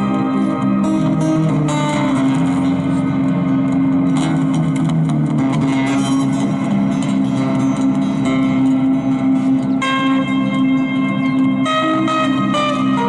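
Solo acoustic-electric guitar played fingerstyle, notes ringing and overlapping over a sustained low bass line.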